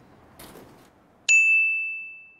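A single bright, bell-like ding that strikes sharply about a second and a quarter in and rings out, fading away over about a second.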